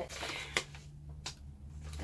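Brown paper bag rustling and crinkling as it is handled, with two sharp crackles, one about half a second in and one past the middle, over a low steady hum.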